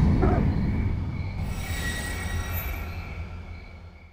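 Studio-logo sound effect: a deep rumbling swell with a steady high ringing tone, slowly fading away. A high shimmering chime joins about a second and a half in.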